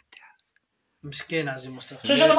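A man speaking, close to the microphone: a faint breath at the start, a short near-silent pause, then his voice resumes about a second in.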